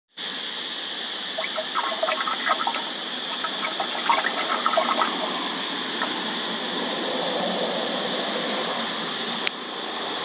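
A stick poking and stirring water inside a tree hole, with a run of small splashes and gurgles from about one and a half to five seconds in. Under it runs a steady high-pitched insect drone, and there is one sharp click near the end.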